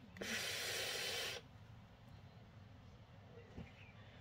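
Airy hiss of a draw through a Hellvape Fat Rabbit rebuildable tank atomizer with its bottom airflow closed, lasting just over a second and cutting off sharply; drawn through the top airflow only, it is very whistly.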